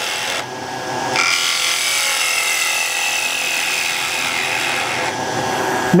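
Bowl gouge cutting into a small wooden bowl spinning on a wood lathe, hollowing out the centre, a steady scraping hiss of shavings over the lathe's hum. The cut lets up briefly about half a second in. It bites again about a second in, with a whistling tone that slowly drops in pitch as the tool works toward the middle.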